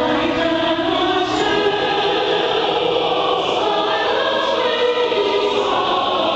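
Large mixed choir of men's and women's voices singing a hymn together, coming in right at the start.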